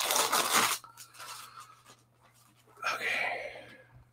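Rustling and crinkling of packing material as a shipping box is unpacked, in two bursts: one right at the start lasting under a second, and another about three seconds in. A steady low hum lies underneath.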